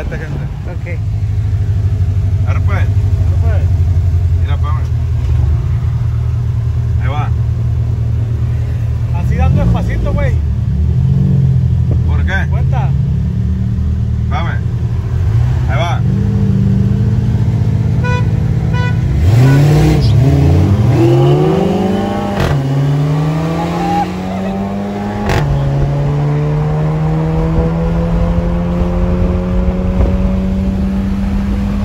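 Car engine heard from inside the cabin: a steady drone while cruising, then it revs up with pitch rising hard, drops sharply at a gear change about twenty-five seconds in, and climbs again.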